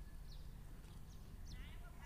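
A pause in the talk: faint background noise, a steady low hum with a few brief, faint high chirps.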